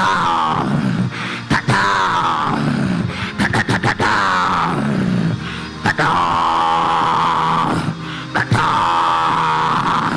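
A man's amplified voice in groaning prayer, heard through a handheld microphone: long, drawn-out groans that slide down in pitch, broken twice by quick stuttered "ta-ta-ta" syllables.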